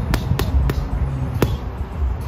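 Boxing gloves striking a hanging heavy bag: three quick punches, then a fourth after a short pause, in the rhythm of a jab, cross and hook followed by a left hook to the body.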